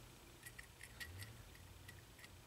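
Near silence: quiet shop room tone with a few faint, light ticks scattered through it.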